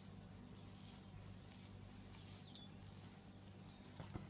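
Near silence: a faint steady low hum, with a few faint, brief high-pitched chirps.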